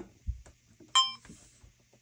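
A finger presses the record button on a DJI Action 4 action camera with a soft low knock, and about a second in the camera gives a short electronic beep as recording starts.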